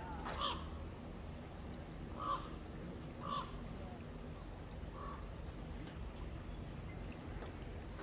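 A bird calling: four short calls spaced a second or two apart in the first five seconds, over a steady low background hum.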